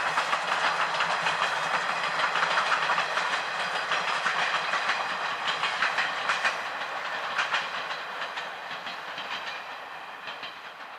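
Mooka Railway's C12 66 steam tank locomotive with 50-series coaches passing by, its wheels clacking over the rail joints in a quick, steady rhythm. The sound fades over the last few seconds as the train moves away.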